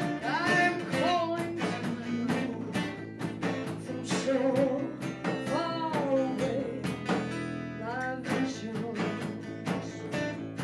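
Live band playing a song: a woman sings lead over strummed acoustic guitar, electric bass, lead guitar and hand percussion keeping a steady beat.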